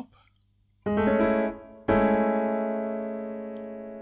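Piano chord A major 7 over G-sharp (G-sharp, A, C-sharp, E) played twice. The first is struck about a second in and released after well under a second. The second is struck about two seconds in and held, fading slowly.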